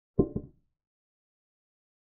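Chess-app sound effect of a wooden piece being set down as a queen captures a pawn: a quick double knock, then silence.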